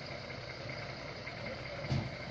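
Military jeep's engine running at low revs as it rolls slowly along a dirt track, a steady low hum. A brief louder sound cuts in near the end.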